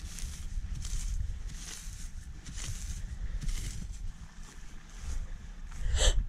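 Hand saw cutting firewood in slow strokes, a rasp about once a second, over the low steady rumble of an idling car engine. The sawing stops about four seconds in.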